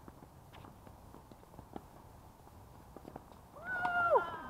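A few faint, sharp knocks of tennis play on an outdoor hard court, then near the end a loud, high held cry that drops in pitch as it breaks off.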